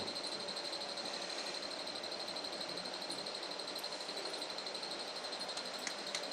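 Steady, faint room tone: an even hiss with a thin, high, constant whine, and no distinct events.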